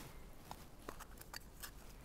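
A small snuffbox being opened and handled: a few faint, light clicks and taps.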